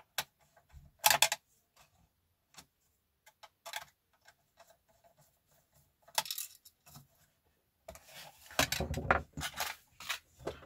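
Small clicks and knocks of a screwdriver working screws out of a plastic RC truck cab, with the plastic body and small parts tapping and rattling as they are handled. A longer burst of rustling and handling noise comes near the end.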